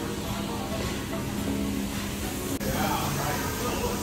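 Restaurant din: a steady wash of room noise and indistinct voices, with music playing underneath.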